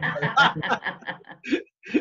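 People laughing and chuckling in short broken bursts that die away about one and a half seconds in.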